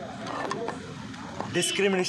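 A man speaking to reporters, quieter for about a second in the middle with a brief pause, then talking louder again near the end.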